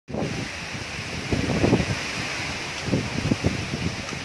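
Strong windstorm gusts tearing through leafy trees, the leaves rustling steadily. Gusts buffet the microphone in low rumbling blasts, strongest about a second and a half in and again around three seconds.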